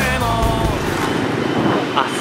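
Intro rock music ends about a second in, giving way to steady city street traffic noise: passing cars and motorbikes heard from a moving motorbike.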